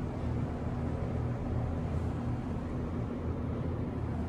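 Steady low hum inside an elevator car, with no door chimes, clunks or other distinct events.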